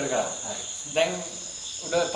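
Crickets chirring in a steady high-pitched chorus, with men talking over it.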